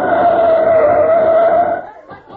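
Radio-drama sound effect of a vehicle coming up: a loud, steady engine drone with a whine that sags and rises slightly in pitch, then cuts off suddenly near the end.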